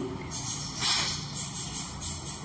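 One sharp, forceful exhalation through the nose, a single kapalbhati stroke: a short burst of breath noise about a second in.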